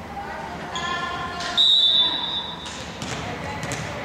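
A referee's whistle blown once about one and a half seconds in, a single steady high blast of about a second, signalling the serve. Shouted voices come just before it.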